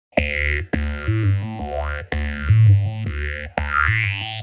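Synthesized news-programme intro jingle: an electronic theme with a heavy bass line, restarted by sharp stabs four times, with rising synth sweeps between them.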